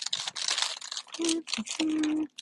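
Clear plastic packaging crinkling and rustling as it is handled and flipped over. The crackling is densest in the first second and comes in short irregular bursts.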